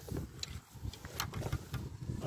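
Handling and rustling noise as hands work at a fish in a mesh landing net, with an irregular low rumble and two sharp clicks, about half a second in and just over a second in.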